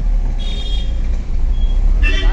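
Steady low rumble of a car's engine and road noise heard from inside its cabin, with a brief faint high tone about half a second in.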